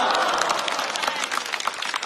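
A studio audience applauding and laughing at a stand-up comedy punchline: dense clapping mixed with many voices, easing slightly near the end.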